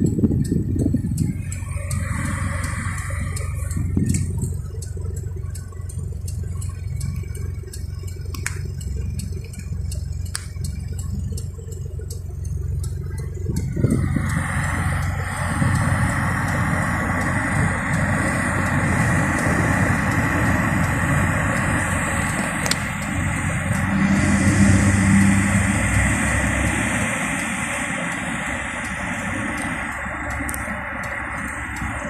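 Car cabin in slow traffic: low engine and road rumble with a few light ticks. About halfway through, a fuller, louder sound joins it and carries on.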